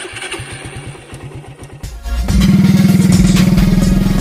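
A motorcycle engine being started: a starter cranks for nearly two seconds, then the engine catches and runs loudly and steadily, with music underneath.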